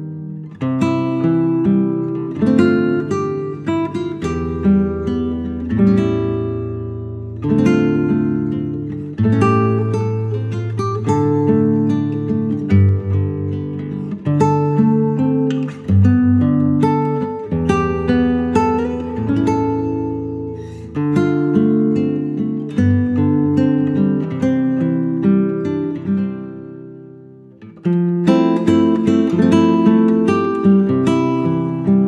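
Acoustic guitar playing an instrumental piece: a plucked melody over held bass notes. Near the end the notes die away, and the playing then comes back fuller in the last two seconds.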